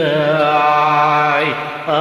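A man's voice singing one long held note of a Carnatic melody in raga Kalyani, over a steady low drone. The note breaks off about a second and a half in, and the next phrase starts just before the end.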